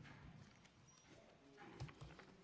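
Near silence in a hearing room, broken by a few faint knocks and thumps, the clearest one near the end, as people get up from a table.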